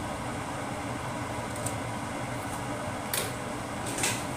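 Steady whir of a kitchen fan, with a couple of short crackles from hot oil in a steel wok, one about three seconds in and one at the end.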